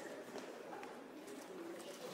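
Quiet pause with faint room tone: a low, even hush with no clear event.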